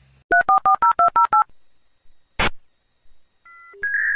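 Touch-tone telephone keypad dialing: a fast run of about ten short two-note beeps, followed by a single short click and a few brief tones near the end.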